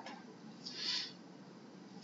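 A pause in speech: faint steady microphone hiss, with one short, soft breath near the middle.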